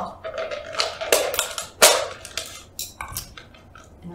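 Thin plastic water bottle crackling and clicking as it is handled, with a straw being forced through holes in its sides using a screwdriver. Irregular sharp clicks, loudest about a second in and again just before two seconds, thinning out toward the end.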